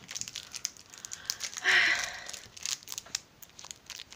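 Clear plastic wrapper around a chocolate truffle crinkling and crackling as it is pulled open by hand, with a louder burst of crinkling a little before halfway through.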